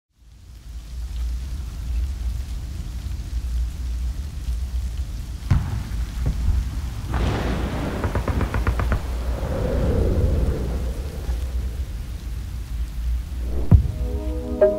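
Steady rain with a deep thunder rumble, fading in from silence. A sharp thunder crack comes about five seconds in, then a longer crackling roll of thunder a couple of seconds later, and a low thump near the end.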